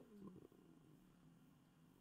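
Near silence: room tone, with a faint low sound in the first half second.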